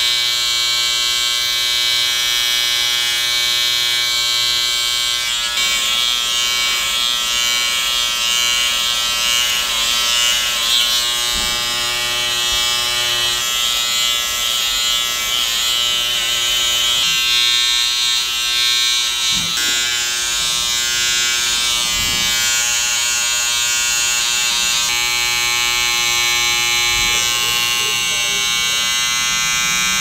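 Electric hair clippers buzzing steadily as they cut a taper at the neckline and sideburns, their tone shifting a little several times as the blade works through the hair.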